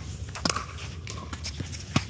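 Tennis balls struck by rackets during a volley exchange on an outdoor hard court, with sharp hits about half a second in and at the end and lighter taps and steps between, over a steady outdoor hiss.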